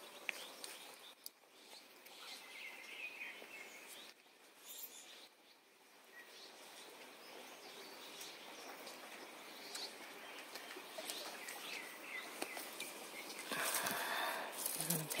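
Outdoor ambience: a steady faint hiss with scattered bird chirps and a few light clicks and rustles. Near the end the rustling gets much louder, as of leaves brushing close by.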